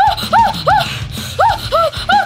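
A man's short, high-pitched yelps of pain, about five in two seconds, each cry rising and falling, as tape is ripped off his hairy arm and pulls the hair out.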